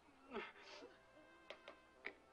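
Quiet, with a person's faint whimper: a short falling cry about half a second in, and two soft clicks later on.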